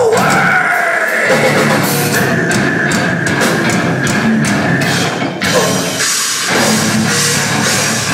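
Live heavy rock band playing loud: distorted electric guitar over a drum kit with crashing cymbals. The low end drops out briefly about six seconds in.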